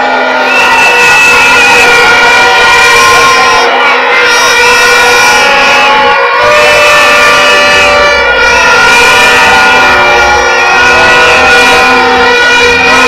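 Many horns blown at once in long, steady, overlapping tones, very loud, over the noise of a crowd.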